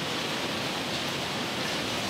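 Steady machinery noise of a waste-sorting plant, with conveyor belts running and carrying loose plastic packaging waste.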